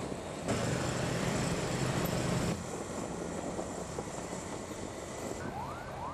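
Police patrol motorcycles riding at speed, their engines running under steady road and wind noise, louder for the first couple of seconds. Near the end a police siren starts, with short rising whoops about twice a second.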